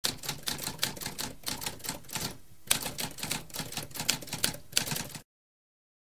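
Typewriter typing: a quick run of keystrokes, several a second, with a short pause about halfway through that ends on a hard strike. The typing stops abruptly about five seconds in.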